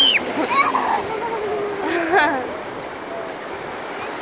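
Shallow ocean surf washing and foaming around the waders' legs, a steady rush of water. A high squeal ends just at the start and a short burst of voice comes about two seconds in.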